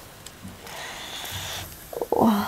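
Soft rustling of long hair being handled and drawn through, lasting about a second.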